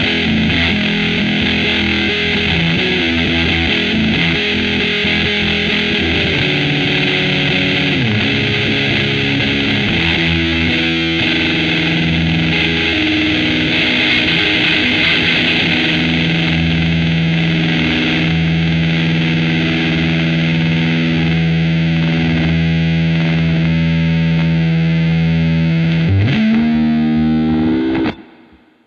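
Electric guitar played through an Electro-Harmonix Big Muff Pi fuzz pedal: a thick, heavily fuzzed riff of long-sustaining notes, with a slide up in pitch near the end.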